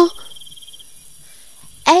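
Cricket chirping, a steady pulsed trill that stops a little under a second in, with a faint high hiss behind it.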